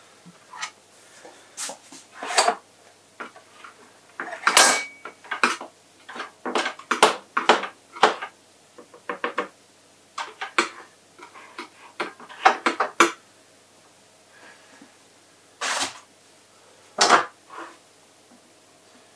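Kitchen handling sounds while quiche pastry is trimmed and pressed into a dish: irregular clicks, knocks and clatter of a knife, chopping board and dish, with a few longer scraping rasps.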